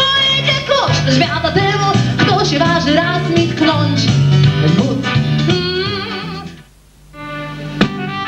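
A woman singing a song with a live band of electric guitar and keyboards. The music drops out briefly near the end, then starts again.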